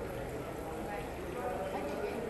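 Indistinct talk of several people nearby, with footsteps of people walking on stone paving.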